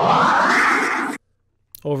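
The classic vocal "ahh" scratch sample, triggered from a MIDI keyboard in the Battery sampler, with its pitch swept upward by the pitch-bend wheel. It cuts off suddenly about a second in.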